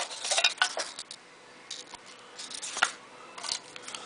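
Clicks and taps of a clear hard-plastic card storage cube and cards being handled: a cluster of clicks in the first second, then a quieter stretch with a few single clicks.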